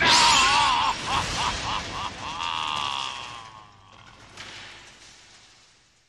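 A loud crash of breaking glass as a glass door is smashed through, with a wavering cry over it. The noise dies away over the next few seconds.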